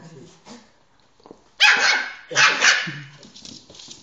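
A dog barking: a quick run of two or three sharp barks starting about a second and a half in.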